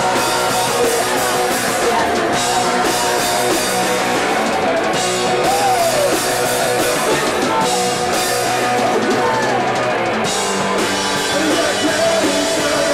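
Hardcore punk band playing live and loud: distorted electric guitars, a drum kit with crashing cymbals, and a vocalist singing into a handheld microphone.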